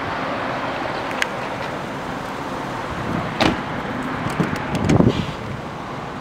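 A car door on a 2006 Honda Pilot being handled: a latch click about three and a half seconds in, then a low thump near five seconds as the rear door is opened. A steady low vehicle and outdoor noise runs underneath.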